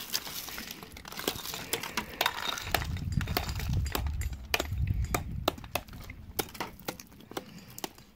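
Thin shale slabs clinking and cracking in irregular sharp taps, as a hammer splits shale and loose pieces knock together. A low rumble runs through the middle.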